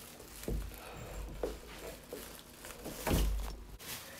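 A door and its knob being handled while a plastic trash bag rustles, with a few knocks and a heavier thump about three seconds in.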